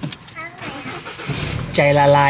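A car engine starting about one and a half seconds in and settling into a steady low idle, heard from inside the cabin, after a brief click at the start.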